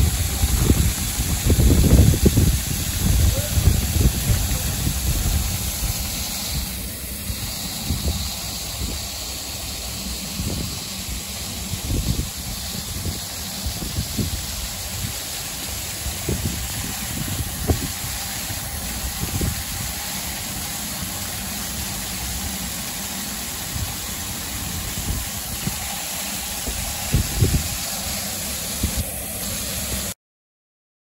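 Outdoor ambience of a lit plaza: the hiss and splash of a ground-level jet fountain, loudest for the first few seconds and then easing. Voices and a traffic hum sit in the background, with irregular low rumbling throughout.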